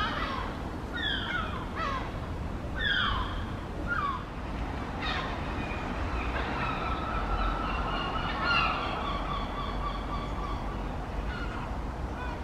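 Birds calling: a run of sharp calls, each falling quickly in pitch, about once a second, then a longer, steadier call through the middle of the stretch, over a low background rumble.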